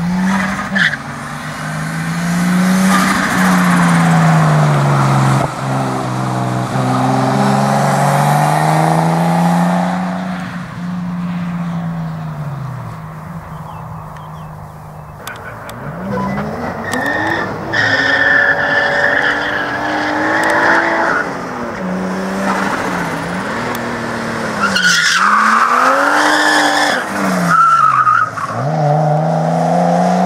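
Nissan R32 Skyline coupe driven hard around an autocross course: the engine revs up and drops again and again through the turns, with tyres squealing at times as the car slides.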